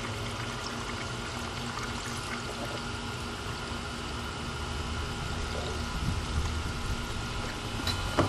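Premixed 50/50 antifreeze coolant pouring steadily from a plastic jug through a funnel into a radiator, topping it off.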